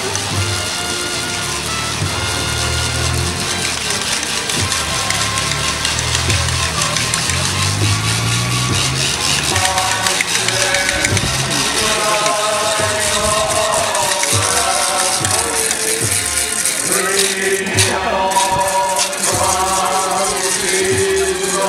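Music with low sustained notes. From about ten seconds in, a group of voices joins in singing a processional hymn or chant.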